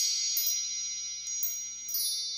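Intro sound effect of bell-like chimes: many high tones ring on together, with a few light sparkling strikes over them.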